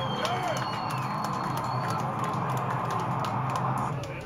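Amplified band sound held as a steady drone at the close of a heavy metal song, under scattered crowd shouts and a warbling whistle in the first second. The drone cuts off sharply near the end.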